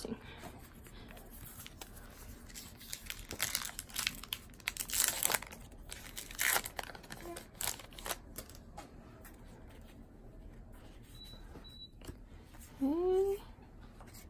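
Trading-card pack wrapper crinkling and tearing as it is pulled open, a run of short rustles over several seconds. A brief vocal sound follows near the end.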